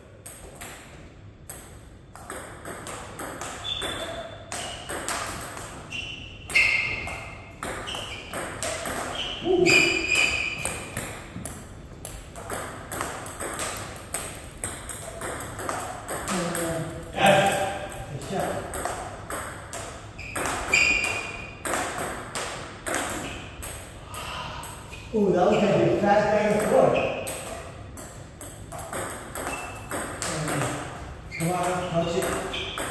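Table tennis rally: a celluloid ping-pong ball clicking off paddles and the table over and over at an irregular pace, with men's voices at times, loudest about 25 seconds in.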